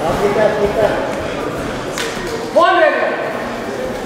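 Voices calling out in a large echoing hall, with a sharp knock about halfway and one loud, drawn-out shout just after it.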